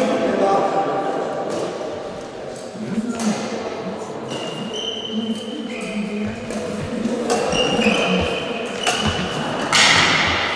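Indistinct voices echoing around a large sports hall, with occasional sharp hits of badminton rackets on a shuttlecock. A few short high squeaks come in about four to five seconds in and again near the end.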